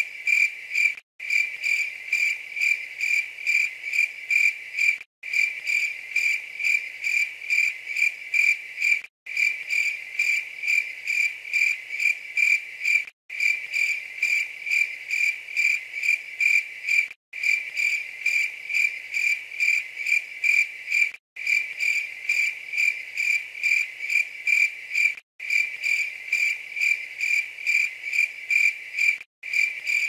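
Crickets chirping: one high tone pulsing rapidly and evenly, from a stock sound effect looped so that it breaks off briefly about every four seconds.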